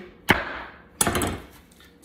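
Chef's knife chopping through an onion onto a wooden cutting board: two sharp strikes, the second about a second in, each fading away after.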